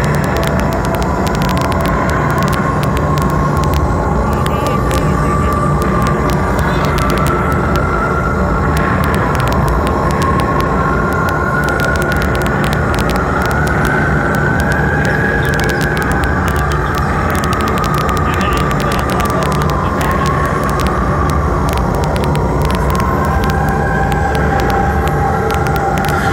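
Heavy metal band playing live, with distorted guitar, drums and sustained wavering high notes, recorded from inside the audience.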